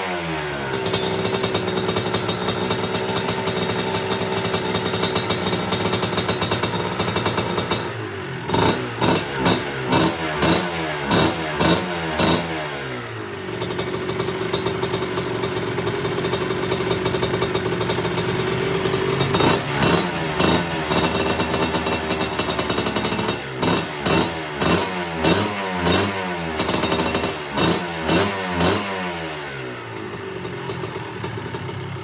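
Kawasaki KMX two-stroke dirt bike engine warming up: it idles steadily, then is blipped on the throttle in two spells of quick revs, each rev rising and falling in pitch about once or twice a second, with steady idling between the spells.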